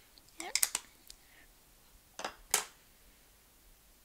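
Plastic stamping tools being handled: a short spoken "yep" with a few small clicks near the start, then two sharp plastic clicks about two seconds in, a quarter of a second apart, as the ink pad case and acrylic stamp block are put down and picked up.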